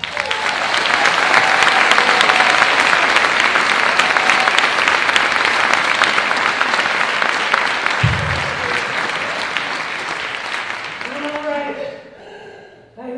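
Audience applauding after the song ends, a dense clapping that holds strong for several seconds and then gradually dies away near the end.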